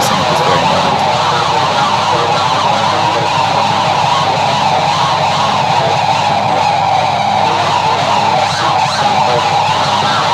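A loud live punk band playing: a dense, unbroken wall of distorted guitar noise with a held, wailing tone over rapid low-end churning.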